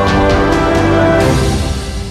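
News bulletin theme music with sustained chords and a few sharp hits, fading out near the end.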